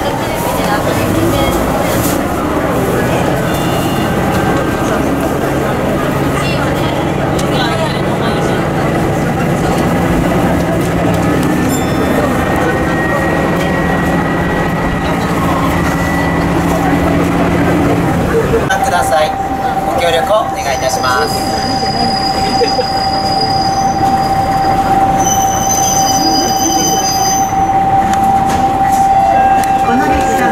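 Diesel railcar heard from inside the cabin, under way: the engine pulls with steady rail noise, then about two-thirds through the engine note drops away as it coasts. A steady high squeal sets in, with sharper, higher squeals over it for several seconds, as the train runs in toward the next station.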